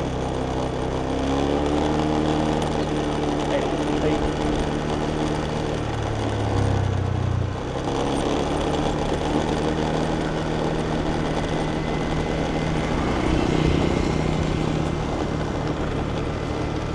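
Motor scooter engine running steadily while riding, its pitch drifting gently with the throttle over road and wind noise; the low note shifts briefly about six to seven seconds in.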